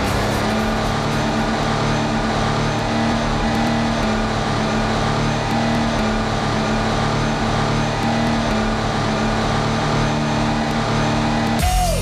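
Music with a steady car engine drone held at high revs, cutting off abruptly near the end.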